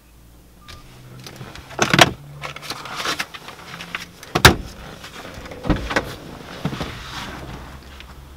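A Nissan car's door being worked as the driver climbs out: a series of clunks and knocks with rustling between, the loudest thump about four and a half seconds in, others about two seconds in and near the end.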